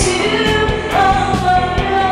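A woman singing into a microphone over pop music with a steady drum beat, moving into a long held note about halfway through.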